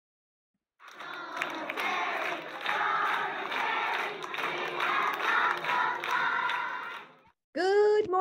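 A crowd of voices shouting and cheering together, starting about a second in and dying away shortly before the end.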